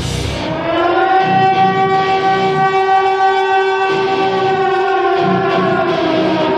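Civil-defence air-raid siren sound, a recorded sample through the band's PA. It winds up in pitch over the first second, holds a steady wail, and begins to wind down near the end, with low bass notes coming and going underneath.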